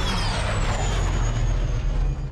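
Sci-fi starship engines flying past in a film soundtrack: a steady rushing roar over a deep rumble, with a high whine that slides slowly downward.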